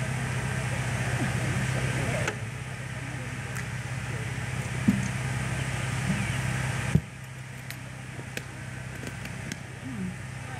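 A steady low hum with faint, murmured voices in the background. About seven seconds in, the hum drops away sharply, and a few light clicks follow.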